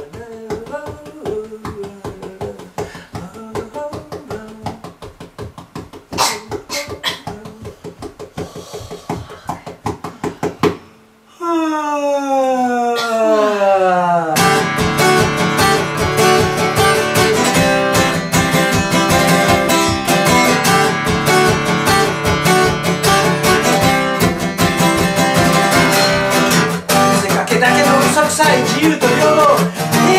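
Acoustic guitar playing with a man singing in Japanese. The first part is quieter and sparse. After a brief drop and a long falling sung tone, the song comes in louder and fuller to the end.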